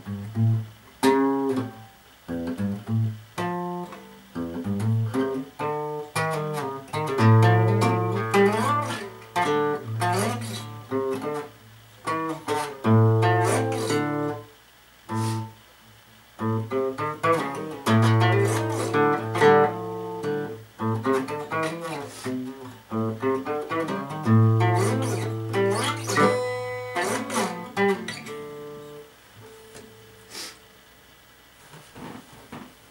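Yamaha dreadnought acoustic guitar fingerpicked: a recurring phrase of plucked notes over a ringing low bass note, played several times with short pauses between, dying away near the end.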